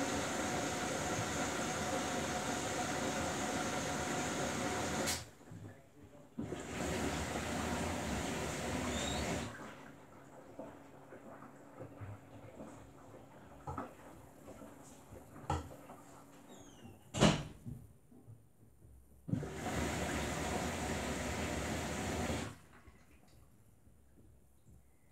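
Samsung Bespoke AI front-loading washing machine early in a wash cycle: three bursts of steady rushing water, the first about five seconds long and the others about three. In the quieter stretches between them come soft knocks of the drum tumbling the wet laundry, with one sharper knock in the second lull.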